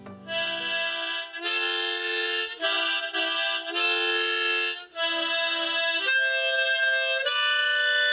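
Suzuki harmonica played by mouth: a run of held chords, each lasting about a second, with the chord changing several times and one brief break in the middle.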